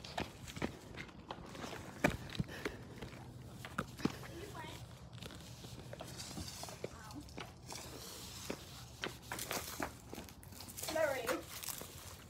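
Footsteps on a concrete driveway, a run of light scuffs and taps, with faint children's voices in the background.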